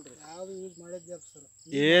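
A steady high-pitched insect trill runs unbroken under men's voices, which are quiet at first and turn loud near the end.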